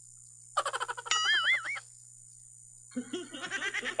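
A short burst of laughter about half a second in, with a wavering, warbling high tone over its second half; after a brief quiet, softer laughter or voice sounds near the end.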